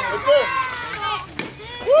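Children's voices calling out and chattering on the field, with one sharp knock about a second and a half in.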